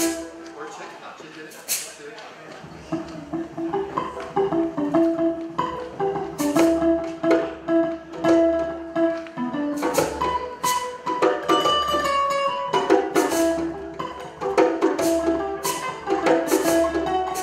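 Live acoustic music: a hand drum played with low bass strokes about once a second and sharp slaps, over a plucked acoustic guitar, with a voice singing a held melody. It starts quietly and fills out after a couple of seconds.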